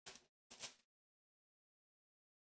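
Two short crinkles of plastic shrink-wrap being pulled off a trading-card hanger box, about half a second apart, then silence.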